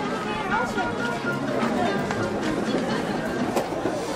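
Spectators in the stands chattering, several voices talking over one another, with a single sharp knock about three and a half seconds in.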